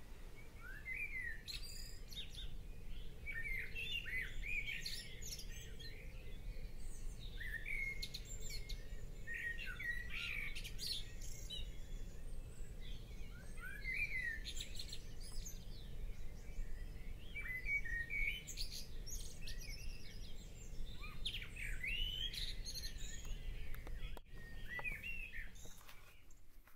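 Wild songbirds chirping and singing in a steady stream of short, high calls and trills, over a faint steady low hum.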